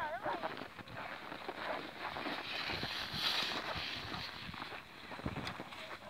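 Uneven crunching and scraping on packed snow: footsteps and the runners of a child's kicksled as it is towed along on a rope.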